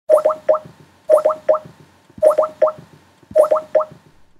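Video-call ringing tone: groups of three quick, short notes at the same pitch, each starting with a brief upward blip, repeated four times about once a second.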